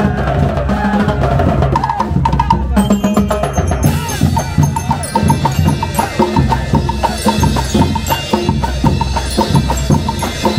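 A marching percussion band playing a Latin-style rhythm on snare drums, congas and timbales, with a fast, steady high click over the drums. Cymbals come in about four seconds in.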